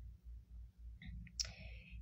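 Quiet pause in speech: a couple of faint mouth clicks about a second in, then a short in-breath near the end, over a low steady hum.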